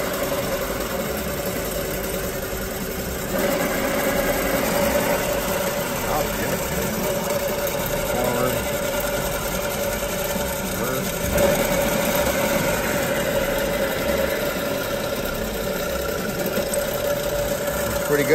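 Rebuilt Paragon PV32R marine transmission spinning on a dyno test stand with a steady mechanical whine. The sound steps up about three seconds in and changes again about eleven seconds in as it is shifted between forward, neutral and reverse.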